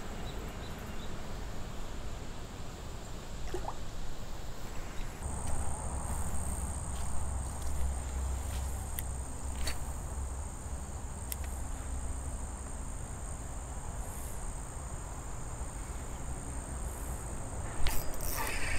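Insects singing in a steady, high-pitched drone that gets louder about five seconds in, over a low rumble and a few faint clicks.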